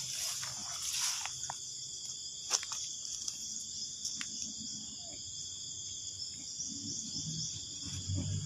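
Steady, high-pitched chorus of insects, with a single sharp click about a third of the way in and some low rustling near the end.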